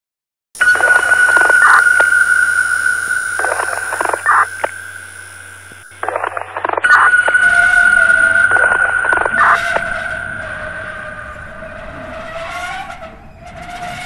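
Electronic sound-design intro: a steady high-pitched tone over a low electrical hum, broken by irregular bursts of crackling static. The tone cuts out briefly near the middle and comes back, later joined by a lower wavering tone.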